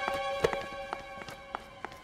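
Footsteps climbing stairs, hard soles clicking about three times a second in an uneven rhythm, over soft background music with held notes.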